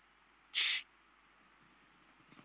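A single brief high-pitched sound about half a second in, lasting about a third of a second, over quiet room background.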